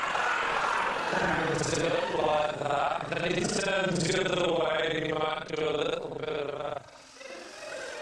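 A man's speech, dropping away about seven seconds in.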